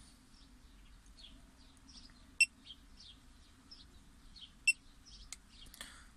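Small birds chirping steadily in short, quick, downward-sliding notes, over a faint low hum. Two short, sharp beeps about two seconds apart stand out as the loudest sounds.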